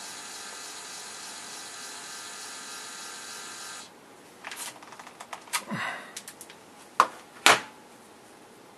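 Dymo LetraTag handheld label printer whirring steadily as its motor prints and feeds out the plastic label tape, stopping abruptly just before halfway. Then rustling and handling, and two sharp clicks about half a second apart near the end as the label is cut off and taken out.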